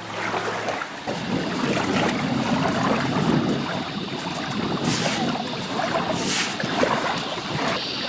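Steady rushing noise of wind on the microphone, with hands scraping and scooping through loose dry sand; two short hissing scrapes come about five and six seconds in.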